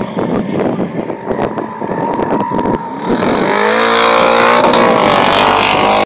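Hyundai Genesis 5.0 R-Spec's V8 engine under power in a drift, its note growing louder and strong about three seconds in and holding at high revs with slight rises in pitch. Before that, gusts of wind buffet the microphone.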